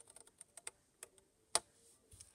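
Scissors snipping small wedges out of white cardstock: a series of light clicks, the loudest about one and a half seconds in.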